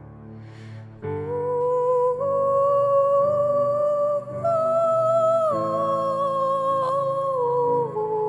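A woman's voice humming long, wordless held notes over a low steady drone. The voice comes in strongly about a second in, climbs in small steps, then slides back down near the end.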